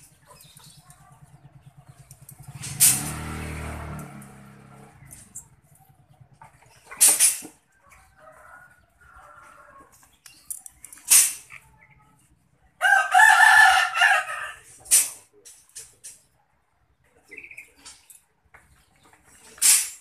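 A rooster crows once, about two seconds long, roughly two-thirds of the way through. Several sharp knocks come every few seconds around it.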